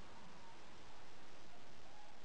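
Steady background hiss of room tone, with a few faint wavering tones near the end.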